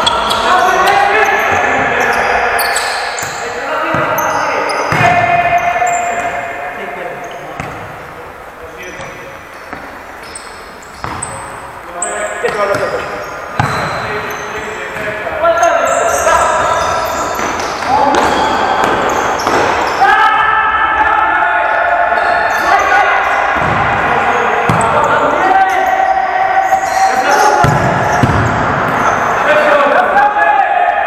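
Indoor football game on a sports-hall court: shoes squeaking on the floor, the ball being kicked, and players shouting, all echoing in the large hall. It goes quieter for a few seconds in the middle.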